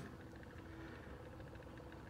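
Faint steady hum of a small motorized turntable display base turning, with light ticking.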